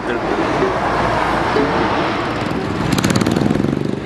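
Street traffic noise, with a motor vehicle's engine running close by; its rapid, even pulsing is strongest near the end.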